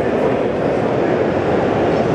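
Steady, low-pitched hubbub of a large, crowded exhibition hall, with no single event standing out.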